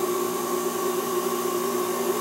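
Wood lathe motor running steadily, a constant hum with an even hiss, as it spins a pen blank on its mandrel.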